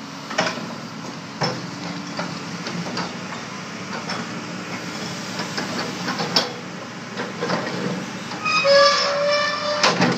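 Tracked hydraulic excavator running, its engine and hydraulics steady under a series of sharp metal clanks and knocks. Near the end comes a high metallic squeal at a nearly steady pitch for about a second and a half, followed by a sharp knock.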